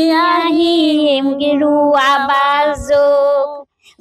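A woman singing solo and unaccompanied in long, drawn-out held notes, then stopping shortly before the end.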